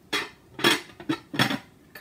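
Slow cooker lid being set down and settled on the pot, with about four short knocks and clinks, the loudest a little under a second in.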